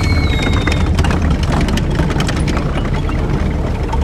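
A tank engine's low steady drone under a scatter of sharp rifle shots: battle sound effects.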